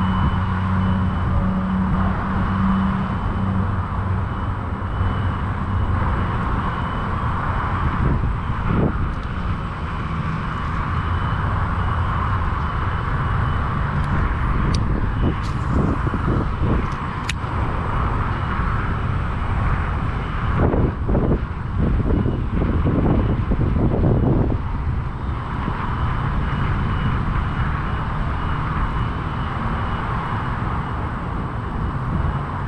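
Steady outdoor noise of wind on the microphone and distant traffic, with a low engine hum in the first few seconds. Several sharp clicks near the middle come from handling the fishing rod and reel.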